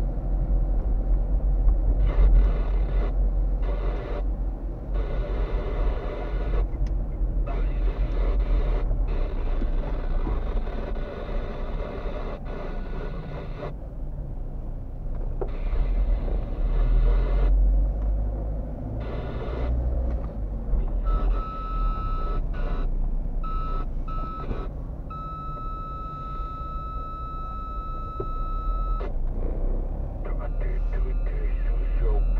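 Steady engine and road rumble heard inside the cabin of a moving car. About two-thirds of the way through, a high electronic beep sounds in several short pieces, then holds as one long tone for about four seconds and stops.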